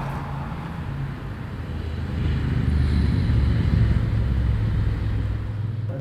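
A motor vehicle's engine running close by, a low steady hum that grows louder about two seconds in and cuts off suddenly at the end.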